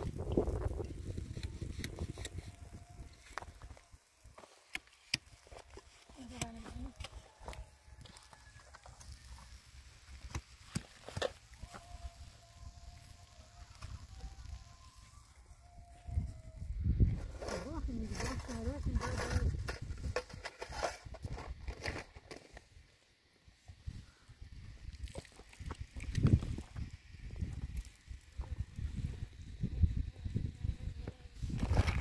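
Wind rumbling on the microphone, with faint voices or short calls coming and going and scattered light clicks.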